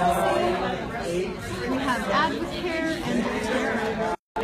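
Several people talking at once: steady, overlapping chatter with no single voice standing out.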